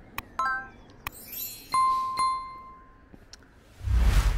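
Sound effects of a subscribe-button animation. A few sharp clicks and a short chirping pop come first, then a high sparkle, then a bright bell ding struck twice about half a second apart, ringing out for about a second. Near the end a loud rush of noise comes in.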